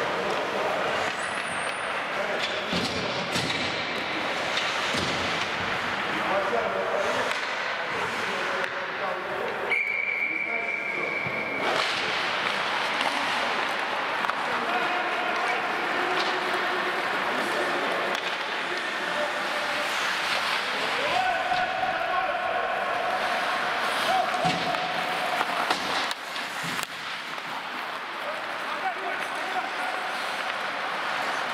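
Ice hockey game sounds: skates scraping the ice, sticks and puck knocking against each other and the boards, and indistinct shouts from players. A steady high tone lasts about two seconds around ten seconds in.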